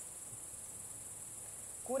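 Crickets chirring steadily at a high pitch.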